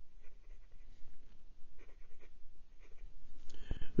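A 1.1 mm stub fountain pen nib writing on lined notebook paper: faint, short strokes of nib on paper.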